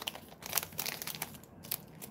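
Plastic bag of Werther's Original sugar-free hard candies and the wrapped candies inside crinkling with irregular crackles as a hand handles the bag and pulls out a candy.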